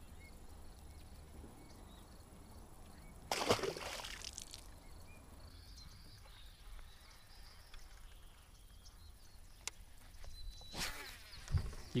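Quiet river ambience with a brief splash of water about three seconds in, then a quieter stretch.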